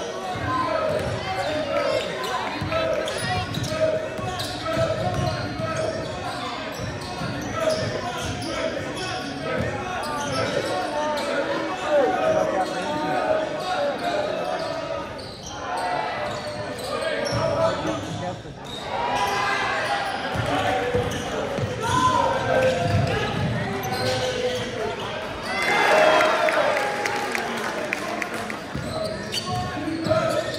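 Basketball game in a school gymnasium: a basketball bouncing on the hardwood floor among the players' and spectators' voices, echoing in the large hall, with a louder burst of shouting or squeaking about 26 seconds in.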